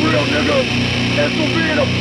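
Indistinct talking over a steady low hum and constant hiss, from a spoken-word recording rather than music.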